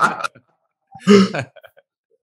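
One short, rough vocal noise from a man, like a throat clear, about a second in.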